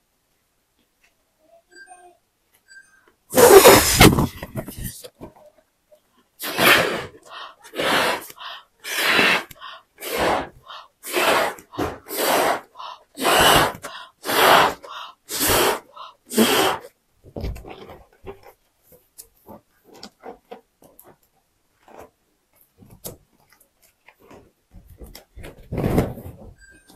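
A person blowing up a party balloon by mouth: one long hard blow about three seconds in, then about ten shorter puffs roughly a second apart, with only faint small sounds after the balloon is full.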